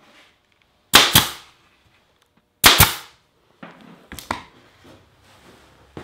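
Pin nailer firing twice, about a second and a half apart, each shot a sharp snap as a 5/8-inch pin is driven through a poplar cleat into a picture frame. A few light knocks follow.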